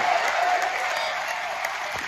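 Audience applauding, the applause slowly dying down.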